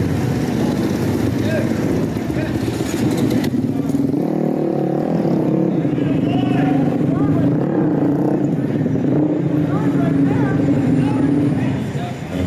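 Several short-track motorcycle engines idling and blipping on a stopped track inside a large hall, with crowd voices mixed in.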